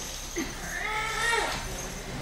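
A single pitched, voice-like note that rises and then falls over about a second, in a quieter stretch between louder music.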